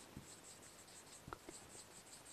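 Faint scratching and squeaking of a marker tip on a whiteboard as a word is written in quick short strokes.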